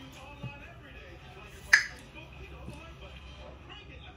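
A bottle's twist-off cap breaking its seal with a single sharp pop a little before halfway through.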